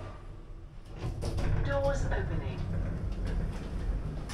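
Lift car doors sliding open with a low rumble and clatter, starting about a second in, on arrival at the ground floor.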